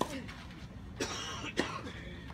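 Tennis rally: a racket hits the ball at the start with a short grunt from the hitter, then two more sharp pops, hits or bounces, about a second and a second and a half in.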